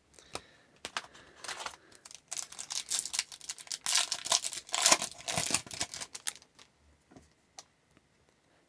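Shiny plastic wrapper of a hockey card pack being torn open and crinkled by hand. There is a dense run of crackling from about two to six seconds in, then a few faint clicks.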